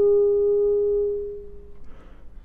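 B-flat clarinet holding a single soft, nearly pure note that fades away about three-quarters of the way through, leaving a brief quiet pause.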